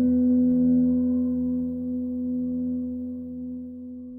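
A single ringing musical tone, struck sharply at the start and held, slowly fading away.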